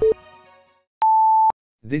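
Electronic countdown beeps: a short beep for the last count at the start while backing music fades out, then a louder, higher, longer beep about a second in, held for half a second, marking the start.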